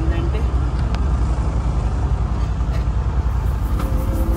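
Engine of a motorized shikara houseboat running steadily, a fast low chugging under a haze of noise.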